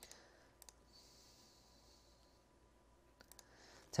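Faint computer mouse clicks: two pairs in the first second and three quick ones near the end, over faint room hiss.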